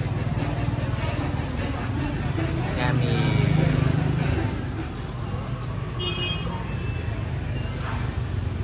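Indistinct voices over a steady low rumble of road traffic, the rumble swelling about three seconds in as a vehicle passes.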